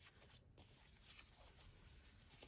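Near silence, with faint rustling of ribbon and fleece fabric being handled as a bow is tied.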